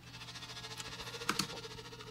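Faint playback of a high, rhythmic string pulse from the Arkhis orchestral sample library, chopped into a really fast choppy flutter by a tremolo effect.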